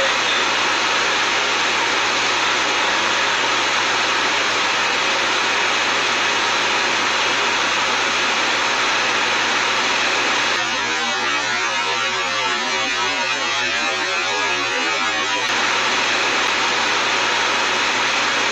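A loud, steady hiss of noise that turns choppy and warbling for about five seconds a little past the middle, then goes back to steady.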